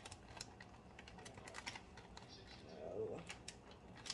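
Small packet of soup mix crinkling and clicking with many faint, irregular crackles as it is pulled and twisted in the hands, a packet that is hard to open.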